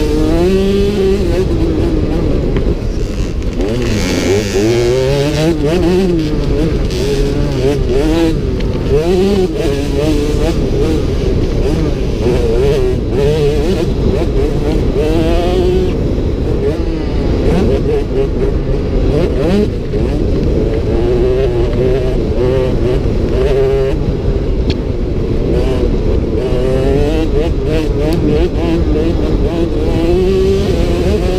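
A motocross bike's engine heard from the bike's onboard camera, its pitch repeatedly climbing and dropping back as the rider accelerates and shifts around a dirt track. A steady low rumble of wind and track noise sits under it.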